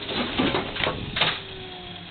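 Brunswick GS-X pinsetter running, its transport band and rollers turning: uneven mechanical noise with irregular clatter, and a faint steady hum coming in about halfway through.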